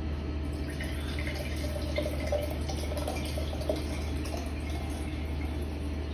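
Wine poured from a bottle into a stemmed wine glass, a steady stream of liquid filling the glass.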